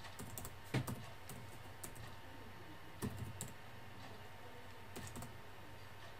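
Keystrokes on a computer keyboard, typing a word: short clicks in small clusters with pauses of a second or more between them.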